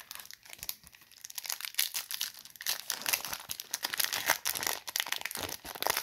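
Plastic wrapper of a Topps baseball card pack being torn open and crinkled. It starts with scattered crackles and becomes a dense, louder crackle from about two seconds in.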